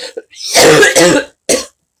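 A woman coughing and clearing her throat: a long cough about half a second in, then a short one about a second and a half in.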